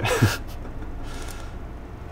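A short breathy exhale from a person at the very start, sliding down in pitch. After it there is only a low steady background hum.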